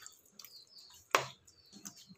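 Spoon stirring thick, wet curd rice in a steel bowl: faint wet sounds with a few small ticks, and one sharp click about a second in.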